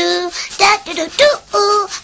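A high, childlike cartoon voice singing a short phrase, with a couple of notes held briefly.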